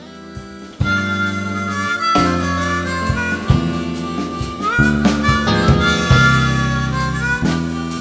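Blues harmonica playing a slow lead line with held, bent notes over electric bass, guitar and drums, from a live blues band. The full band comes in about a second in.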